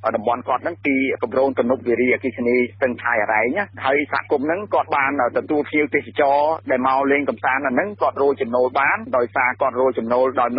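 Continuous speech from a Khmer-language radio news broadcast, with a steady low hum underneath.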